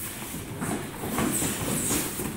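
Karate sparring: irregular thuds of punches and kicks landing and bare feet stamping and shuffling on foam mats, from several pairs at once.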